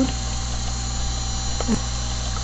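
Steady electrical hum and hiss of the recording setup: a low mains hum with a few constant thin whining tones over a hiss floor. A brief faint sound comes near the end.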